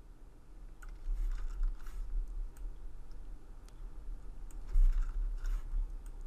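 Scattered light clicks and taps from a laptop trackpad and keyboard while working in Photoshop, several spread unevenly across a few seconds, with a dull low bump about five seconds in.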